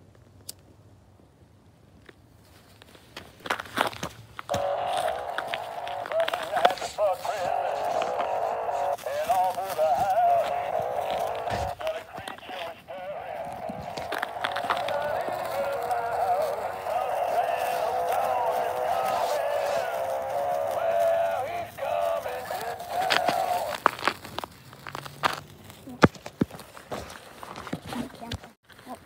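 Animated singing Santa toy playing its song through a small tinny speaker, starting about four seconds in and stopping a few seconds before the end. Scattered clicks and crackles run alongside it.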